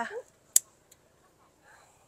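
Scissors snipping through the stem of a grape bunch: one sharp snip about half a second in, followed by a fainter click.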